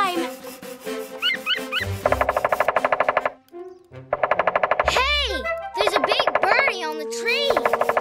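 Cartoon woodpecker drumming its beak on a hard log: rapid pecking at about fifteen strikes a second, in several runs of about a second each. Swooping musical notes play between the runs.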